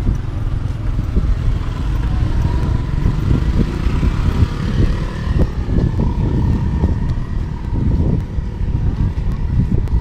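Wind buffeting the microphone in uneven gusts, with a faint steady engine whine underneath from about two seconds in.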